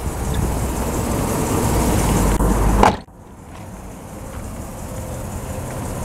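Pickup's 6.0-litre V8 idling, heard up close under the open hood as a steady low rumble. About three seconds in there is a click and the sound cuts off suddenly, leaving a much quieter steady hum.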